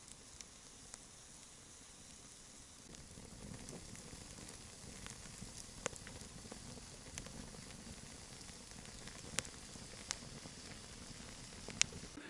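Firewood burning in an open-fronted metal drum stove: a faint steady hiss with scattered sharp crackles and pops, a little louder from about three seconds in.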